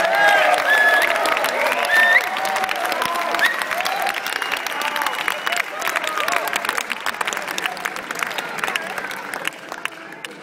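Large audience applauding and cheering, with dense clapping and scattered whoops and shouts. The applause dies down near the end.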